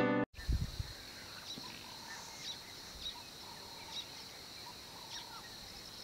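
Outdoor grassland ambience: a steady high-pitched insect drone, with short bird chirps about once a second. A few low thumps come near the start.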